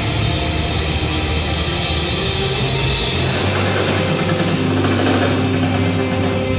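Hard rock band playing live: electric guitar and drum kit, loud and continuous.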